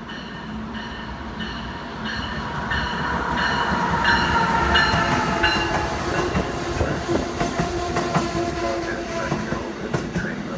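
Amtrak passenger train, an electric locomotive hauling Amfleet coaches, rolling into the station on the near track. It grows louder as the locomotive nears and the coaches pass close by. In the second half there is wheel clatter over the rail joints along with a faint steady wheel squeal.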